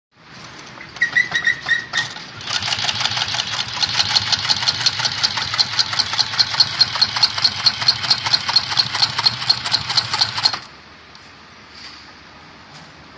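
Kingmax GA204H-1 post-bed, compound-feed walking-foot industrial sewing machine stitching thick thread through leather. The needle and large shuttle hook clatter in an even rhythm of several strokes a second after a brief start about a second in, then stop near the end, leaving a low motor hum.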